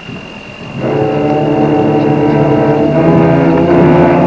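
A junior high school concert band comes in about a second in with a loud, sustained chord of wind instruments, held and shifting a little near the end.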